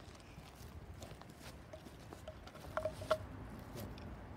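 Light scattered crunches and taps of movement on railroad track ballast, over a faint low rumble, with a few sharper taps about three quarters of the way through.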